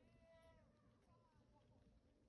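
Near silence: faint outdoor ambience with a few faint, distant high calls that fall in pitch at their ends, the first lasting about half a second near the start and a shorter one about a second in.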